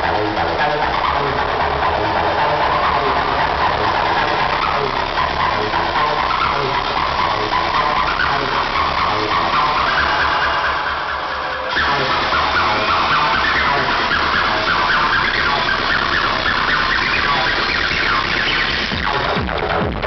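Old-school acid rave music played loud over a festival sound system: a siren-like synth line rises steadily in pitch for about eleven seconds while the kick drum thins out. The full track drops back in with the beat about twelve seconds in.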